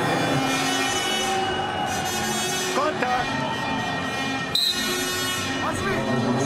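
Arena crowd noise with music playing over the hall, and a short, high referee's whistle blast about four and a half seconds in, signalling the restart in par terre.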